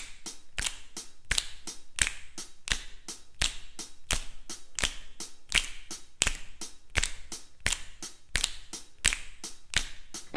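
Finger snapping in a steady rhythm, about three snaps a second with some falling harder than others, keeping the beat of a song's intro.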